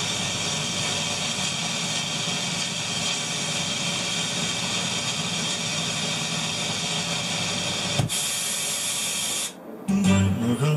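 Vintage ITT Schaub-Lorenz SRX75 receiver hissing with steady static as its tuning knob is turned between stations, with a single click about eight seconds in and the hiss dropping away just before the end.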